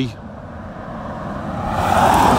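A car going by on the road, its tyre and engine noise growing steadily louder toward the end.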